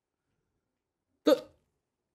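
Near silence, then one short spoken syllable from a man about a second and a quarter in.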